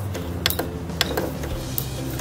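Electric sewing machine running at slow speed, stitching through paper and fabric: a steady low motor hum with regular clicks.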